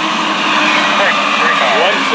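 Two Amtrak GE P42DC diesel locomotives passing at slow speed, their V16 diesel engines running with a steady drone over the rumble of the train on the rails.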